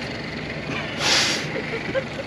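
A short hiss about a second in, lasting about half a second, over steady background noise.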